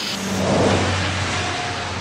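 Steady engine drone of a hurricane-hunter aircraft: a loud, even rushing roar with a low hum underneath.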